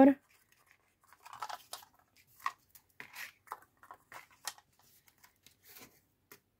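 Faint rustling and small scrapes and taps of paper being handled: folded accordion paper pieces are slid and pressed into place, in short scattered bursts.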